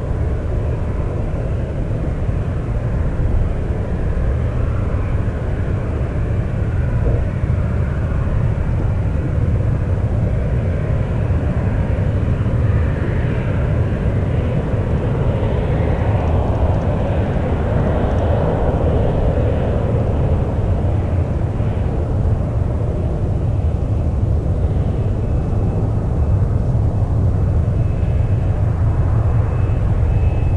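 Lockheed Martin F-35B's single F135 jet engine running as the fighter taxis and lines up: a steady deep rumble that grows louder near the end as the afterburner takeoff roll begins.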